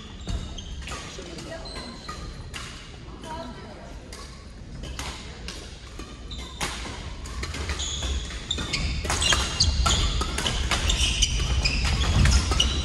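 Badminton doubles play: sharp racket hits on the shuttlecock and shoes squeaking on the wooden court floor. It gets busier and louder in the second half as a rally is played.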